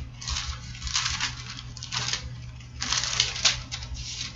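Thin paper pages rustling in several short bursts as a Bible is leafed through to find a passage.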